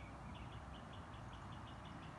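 A bird calling: short high chirps repeated quickly, about five a second, over faint background noise.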